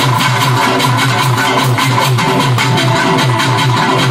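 Live folk music: a frame drum beaten with sticks in rapid, steady strokes over electronic keyboard accompaniment with a repeating bass pattern.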